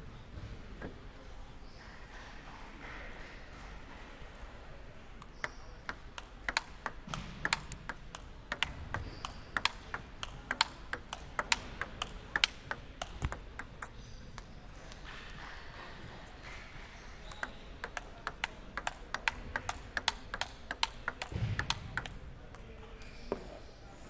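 Table tennis ball being hit back and forth in a warm-up rally, sharp clicks off the paddles and the table. There are two spells of quick, uneven hits with a short pause between them.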